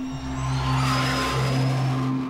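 A-4 Skyhawk jet flying past with a rushing roar that swells and peaks about a second in, its high turbine whine rising in pitch as the engine is powered up on a wave-off.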